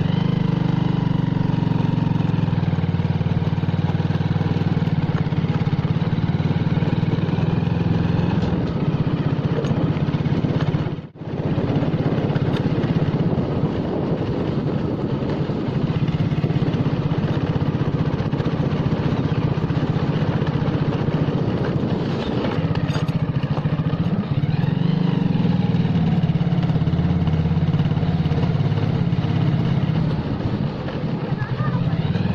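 Petrol motorcycle engine running steadily while being ridden, heard from the rider's seat. The sound drops out briefly about eleven seconds in.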